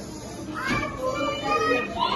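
Young children's voices chattering and calling out in a classroom.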